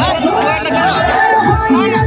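Loud dance music from a sound system with a steady thudding beat about twice a second, and a crowd of voices chattering and shouting over it.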